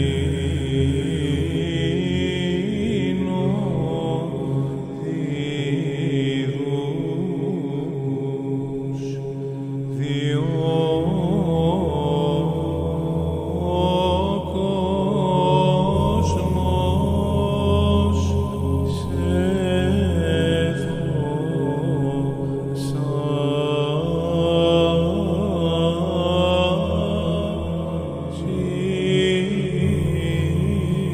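Greek Orthodox Byzantine chant: a priest's voice chanting a slow, ornamented melody over a steady low drone, with the drone shifting pitch a few times.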